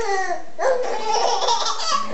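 A baby of about seven months laughing: a quick string of short, high-pitched laughs.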